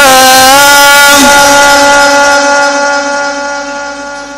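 A male Quran reciter's voice in the melodic, drawn-out style, holding one long note after a slight waver in pitch; the note fades away over the second half.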